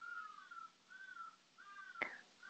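Three short, faint whistled notes, each gliding up and down in pitch, spaced about half a second apart.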